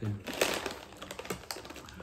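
Plastic zip bag of crunchy namkeen snack mix crinkling and rustling as fingers dig into it: a run of small, irregular crackles and clicks.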